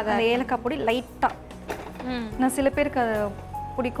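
A voice talking over background music.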